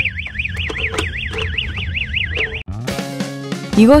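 Electronic warning alarm warbling rapidly up and down, about four to five sweeps a second, set off by lifting the clear protective cover over a fire-alarm call point. It cuts off suddenly about two and a half seconds in, and guitar music follows.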